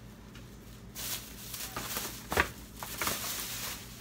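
Thin plastic grocery bag rustling and crinkling as items are pulled out of it, with a few sharper crackles; it starts about a second in.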